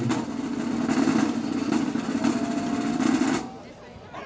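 Marching band drumline of snare, tenor and bass drums playing a fast sustained roll that stops abruptly about three and a half seconds in.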